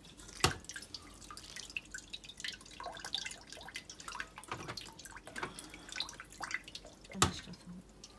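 Water dripping and trickling from the drain at the bottom of a front-loading washing machine into a pot on the floor, the machine being drained by hand because it still holds water. Two sharp knocks, about half a second in and near the end.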